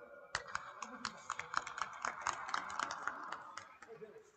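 A small group clapping: sharp, irregular claps, several a second, starting about a third of a second in and fading near the end.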